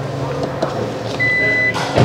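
Hyundai Palisade power tailgate opening: its warning buzzer gives one high, half-second beep, then a short rush of noise near the end as the tailgate lifts.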